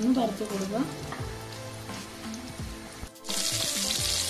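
Prawn vada patties shallow-frying in hot oil in a pan, sizzling. The sizzle jumps much louder about three seconds in.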